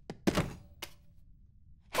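A sudden heavy thunk as something bulky is handled and set down, followed by a lighter click a little later.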